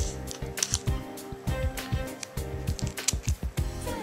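Scissors snipping through a thin plastic trading-card collector's page, a string of irregular sharp clicks, over steady background music.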